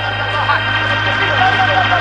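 Church congregation shouting and praising together over loud music, many voices at once, with a steady low drone underneath.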